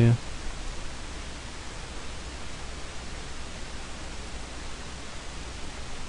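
Steady hiss of the recording's background noise, with a faint low hum underneath; no other distinct sound.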